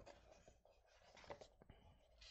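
Faint rustle of a sketchbook page being turned, with a few light paper ticks in the second half.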